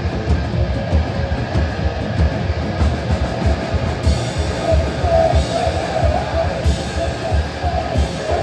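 Live heavy metal band playing at full volume: distorted electric guitar and bass over fast, driving drums.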